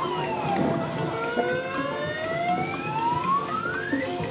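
Claw crane game machine's electronic sound effect: a quick falling tone, then a slow steadily rising tone, the kind that plays as the claw drops and lifts.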